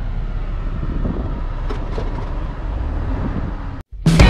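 Steady low rumble of a vehicle's running engine and cab noise heard from inside the cab, with a few faint clicks, cutting off abruptly near the end.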